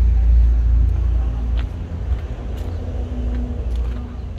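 Low, uneven rumble of wind buffeting the microphone outdoors, heaviest in the first second and a half and then easing, with a faint voice about a second in.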